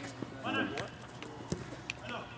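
A short burst of a man's laughter about half a second in, over a few sharp taps from players' feet and the ball on the turf court.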